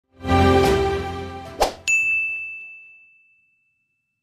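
Logo intro sound effects: a full, ringing hit with a low rumble under it, a quick swish, then a bright ding that rings on as one clear high tone and fades away.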